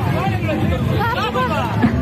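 Crowd of many voices talking and shouting together, with music playing underneath.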